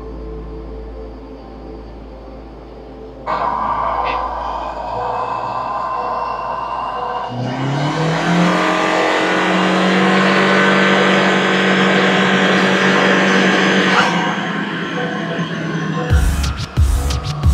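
Turbocharged Honda Civic engine revving on a chassis dyno under background music: its pitch climbs, then holds high with a loud rushing noise.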